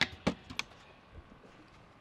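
Light handling sounds: three short, sharp taps in the first second, then only faint background.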